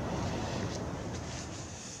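Outdoor background noise of wind on the microphone, a low rumble and hiss that fades gradually toward the end.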